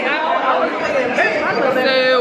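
Many people talking at once in a large indoor hall, with a laugh at the start.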